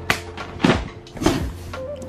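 Plastic packing strap being cut and a large cardboard box opened: three sharp snaps and scrapes about half a second apart, over background music.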